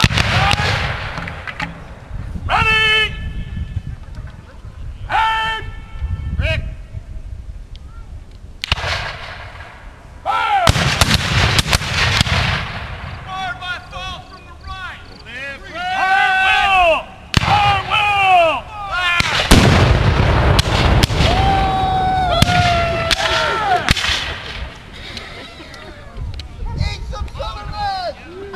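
Reenactment field cannon firing blank black-powder charges: three heavy booms about ten seconds apart, at the start, about ten seconds in and about twenty seconds in, each trailing off over a second or two. Men shout between the shots.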